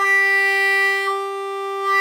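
A harmonica holding one long note at a steady pitch, rich in bright overtones, its tone shaped by the player's mouth placement. The brightness dips a little about a second in and comes back strongly near the end.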